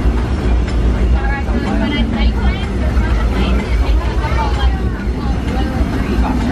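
Steady low rumble of a narrow-gauge steam train's passenger car running along the track, with people's voices talking over it in the middle of the stretch.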